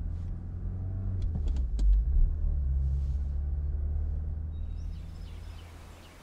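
A deep, steady low rumble with a few sharp knocks about a second or two in, the loudest near two seconds, then fading away toward the end.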